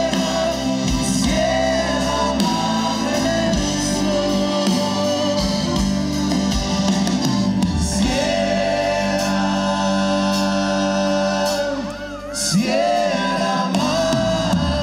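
Live band playing: a male lead singer sings long held notes over acoustic guitar and the band, with a short drop in volume near the end.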